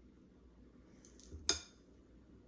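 A single sharp clink of ceramic dishware about one and a half seconds in, with a brief high ring, as a hand reaches into a bowl of shredded cheese; a few faint rustles come just before it.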